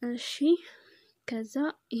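A person speaking in short phrases, breathy at the start and with a brief pause about a second in.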